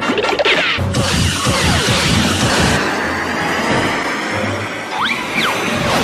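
Cartoon soundtrack: busy orchestral music laid under slapstick crashing and banging sound effects, with a couple of quick sliding-pitch effects about five seconds in.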